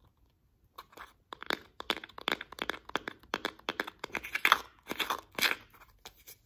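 Fingers and nails tapping and scratching on plastic slime tubs close to the microphone. It comes as a quick, irregular run of sharp crackling taps and scrapes, starting about a second in and loudest just past the middle.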